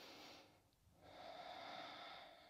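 A woman's faint, slow breathing: one breath fading about half a second in, then a longer breath starting about a second in.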